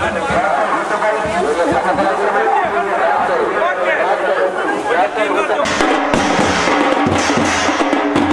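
Mixed voices and music, with a street band of large drums starting up about two-thirds of the way through and beating rhythmically.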